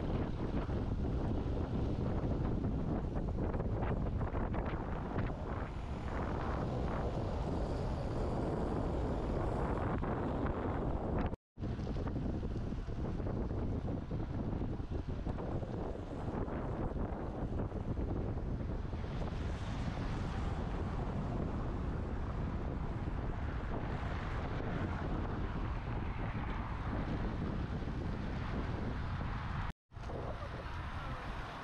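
Steady wind noise buffeting the microphone of a camera on a road bike in motion. The sound cuts out for an instant twice, about eleven seconds in and just before the end, where the footage is spliced.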